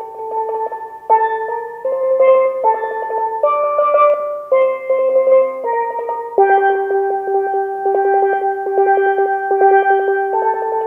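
A single steel pan played solo with sticks: a melody of rolled notes, each held by rapid repeated strikes, the pitch stepping between notes every half second or so.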